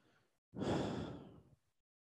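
A person sighing once close to the microphone: a breathy exhale that starts suddenly about half a second in and fades away over about a second.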